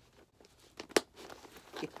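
Leather rustling as the flap of a fully packed Chanel Wallet on Chain is pressed down over its contents, then one sharp click about a second in as the flap fastens shut.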